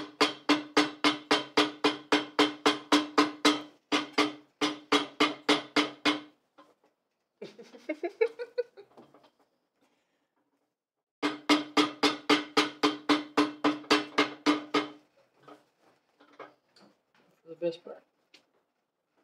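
A steel shoe hammer pounding red upholstery leather on a cast iron shoe last, about four blows a second. The iron rings on each blow. A run of about six seconds is followed by a pause, then a second run of about four seconds.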